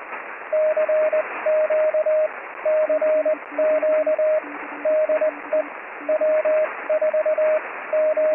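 Morse code on an amateur radio receiver: a louder, higher-pitched CW signal and a fainter, lower-pitched one, keyed in dots and dashes over steady static hiss in the receiver's narrow passband.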